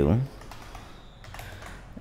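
Typing on a computer keyboard: a few quiet key clicks.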